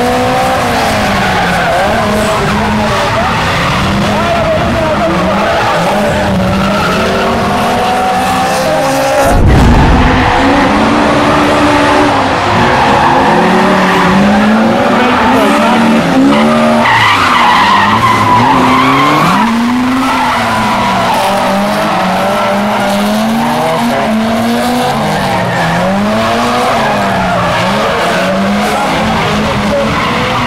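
Drift cars sliding around a tarmac track: engines revving up and down over and over, with tyre squeal. About nine seconds in there is a sudden low thump, and the cars run louder for the next ten seconds or so.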